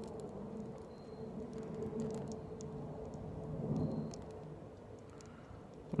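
Wind buffeting the microphone: a low rumbling noise that swells and fades, with a faint steady hum underneath and a few faint clicks.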